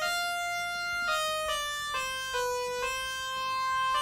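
A keyboard or synthesizer playing a slow run of held notes, about two a second, each at a dead-steady pitch with abrupt steps between them. The flat, stepped pitch is the pattern that hard pitch correction (auto-tune) leaves on a vocal.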